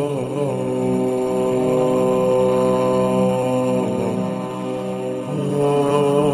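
A solo voice chanting in long, held notes, each drawn out for a second or more and shifting pitch a few times.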